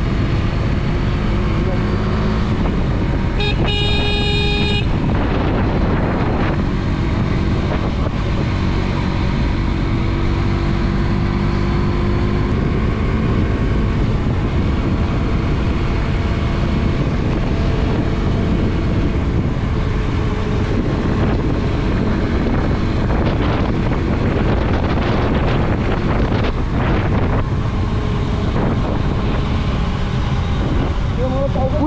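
Motorcycle engine running on the move with heavy wind rush on the microphone. About three and a half seconds in, a vehicle horn sounds for just over a second.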